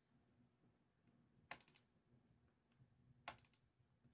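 Near silence with two short bursts of faint clicking at a computer, about two seconds apart, as the user works through a file-save dialog.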